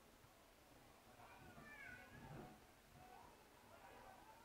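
Faint, distant high-pitched shouts with bending pitch, in two bouts: one about a second in and another near the end, over otherwise near-silent ground ambience.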